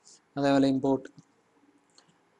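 A man's voice speaks briefly in the first half, then a few faint keyboard clicks as code is typed on a computer keyboard.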